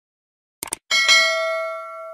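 Subscribe-button animation sound effect: a short mouse click, then a notification-bell ding that rings on with several clear tones and fades out.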